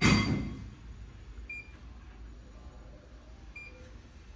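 A short loud thump at the start, then a faint steady hum with two brief high beeps about two seconds apart from a Fluke insulation resistance tester running a 1 kV insulation test.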